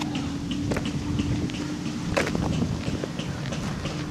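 Footsteps crunching along a dry dirt and gravel track, with wind rumbling on the microphone and a faint steady hum underneath; a couple of sharper clicks stand out.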